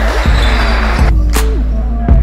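Backing music track with a heavy, steady bass, sharp drum hits and a synth tone that slides slowly downward.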